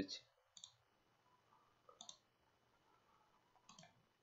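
Three faint computer mouse clicks, spaced about a second and a half apart, each a quick press and release, in near silence.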